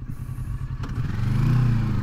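Kawasaki Versys 650's 180-degree-crank parallel-twin engine idling, then revving up about a second in as the motorcycle pulls away from a stop. The pitch rises, then dips slightly near the end.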